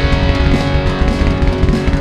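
Live band playing an instrumental passage: electric guitar and bass guitar over a drum kit, with no singing.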